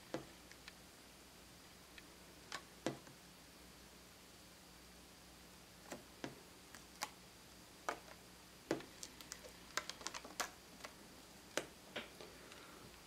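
Faint, scattered small clicks and ticks of dried liquid latex being peeled up off a plastic tray, with fingertips touching the plastic; the clicks come thicker toward the end.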